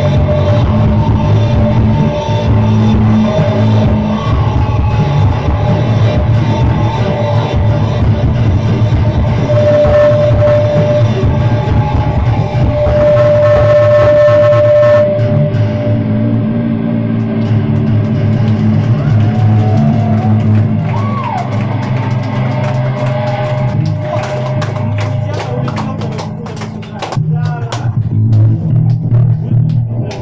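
Post-punk band playing live: electric guitars with held, ringing notes over bass and drums, loud and dense. Sharp drum hits stand out in the last few seconds.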